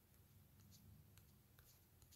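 Near silence: room tone of a home recording, with a faint low hum and a few faint clicks.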